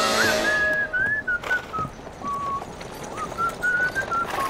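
A person whistling a slow melody in a Western-style film score: a string of single notes that slide up and down between pitches.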